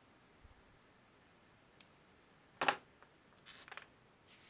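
Hands handling silicone tubing and the cardboard-and-syringe arm: a single sharp click about two-thirds of the way through, then a few lighter clicks and rustles near the end, over a faint quiet background.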